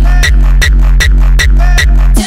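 Hardtekk dance track with no vocals: a hard kick drum hitting about three times a second over a steady, heavy bass, with a synth melody above.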